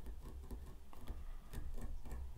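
Quick, irregular light clicks, several a second, as a fly-tying brush picks out the spun ice dub on the underside of a fly in the vise.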